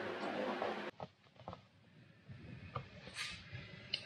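A steady buzz under a hiss cuts off abruptly about a second in. After that come only faint small clicks and rustles of fingers handling foam, wires and tubing.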